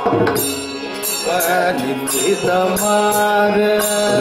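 A bhajan group singing Carnatic devotional music, with voices holding long, wavering notes from about a second in. A drone and a steady percussive beat of about two strikes a second run underneath.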